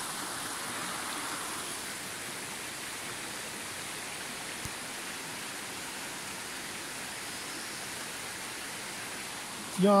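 Shallow stream running over a stony bed: a steady rush of water.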